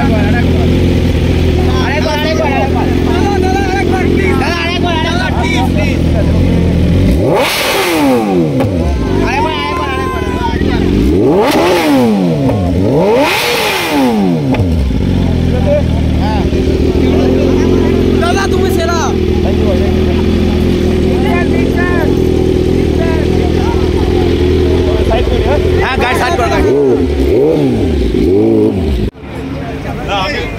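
Motorcycle with an aftermarket Akrapovic exhaust idling steadily, revved hard three times about a quarter of the way in, each rev rising and falling in pitch, with two shorter blips near the end.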